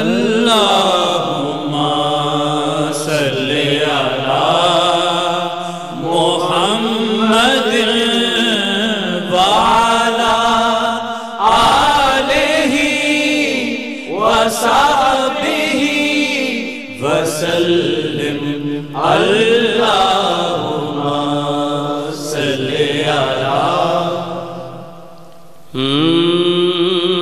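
A man singing the slow, drawn-out opening of a naat, an Islamic devotional song, into a microphone. Long held phrases of a few seconds each, with ornamented pitch that rises and falls, and short breaths between them.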